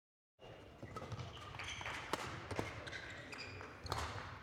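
A badminton rally in a sports hall: rackets striking the shuttlecock with sharp hits, around one second in, twice near the middle and again just before the end, while players' shoes squeak on the court floor. The sound starts abruptly about half a second in.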